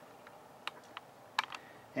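About five faint, sharp clicks spread unevenly over two seconds, from hard plastic action-figure parts being handled.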